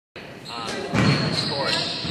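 Thuds and knocks echoing in a large gymnasium, the strongest about a second in, with voices in the background.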